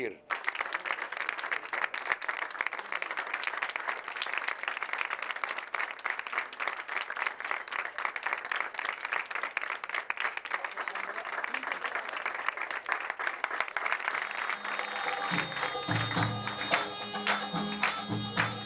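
A crowd applauding, a dense run of many hands clapping. About fifteen seconds in, music with a steady beat starts.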